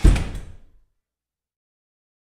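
A single loud, sudden thud with a deep rumble that dies away in under a second.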